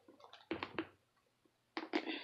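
Faint handling noise of a thin plastic water bottle being gripped in both hands: a few soft crackles, the loudest cluster about half a second in.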